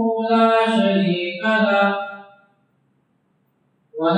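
A man's voice chanting Arabic in long, drawn-out melodic notes into a microphone. It fades out a little over two seconds in, and after silence the chant starts again right at the end.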